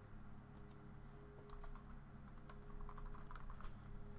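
Computer keyboard typing: a run of quick key clicks, a few at first and then thicker from about a second and a half in, faint over a steady low hum.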